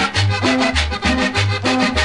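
Cumbia recording playing: accordion melody over a pulsing bass line and a steady, quick percussion rhythm.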